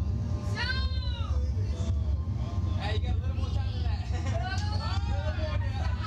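Wordless drawn-out vocal calls that rise and fall in pitch, twice, over a steady low rumble.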